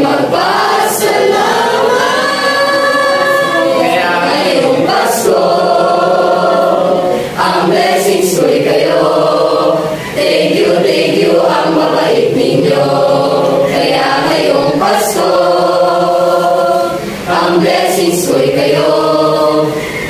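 A mixed choir of young men and women singing together in chorus, in sustained phrases with brief breaks between them.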